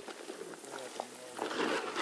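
Water spraying from a garden hose onto a wood-chip and straw mulch bed, a steady hiss. A louder noise comes in about one and a half seconds in.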